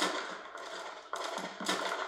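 Distant gunfire in a war film's battle soundtrack: a few sharp shots in the second half, over a low background rumble.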